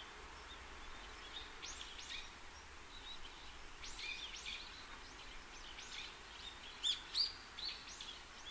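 Faint birdsong: small birds chirping in short, high calls on and off over a light hiss, a few of them louder near the end.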